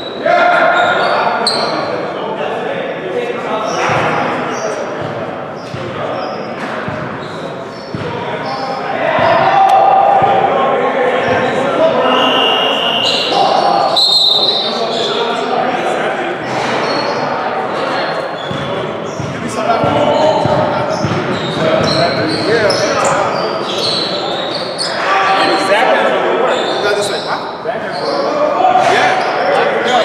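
Basketballs bouncing on a hardwood gym floor among overlapping, indistinct voices, all echoing in a large gym hall.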